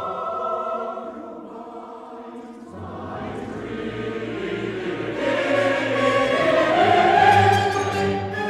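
Mixed chorus singing with symphony orchestra in a 20th-century choral cantata. The music softens about two seconds in, then swells to a loud peak near the end.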